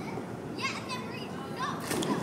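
Children's voices calling out a little way off, a couple of short, high calls over a steady outdoor background hum.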